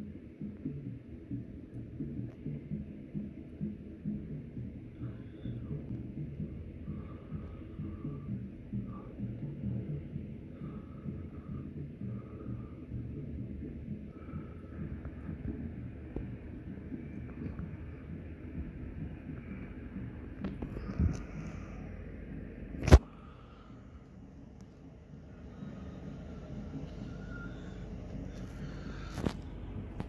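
Low, steady rumbling noise of the street procession below, with faint scattered higher sounds over it. A single sharp knock about three-quarters of the way through, after which it is briefly quieter.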